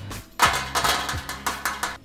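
Oiled sweet potato cubes tipped from a ceramic bowl onto a parchment-lined baking tray, a fork scraping and pushing them out in a quick run of clatters and scrapes that starts about half a second in.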